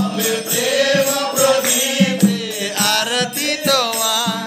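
Hindu devotional kirtan: a voice sings a Krishna bhajan with gliding melody over regular mridanga drum strokes and the ringing of kartal hand cymbals.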